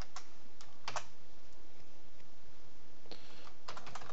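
Typing on a computer keyboard: a few scattered keystrokes in the first second, then a quick run of keystrokes near the end.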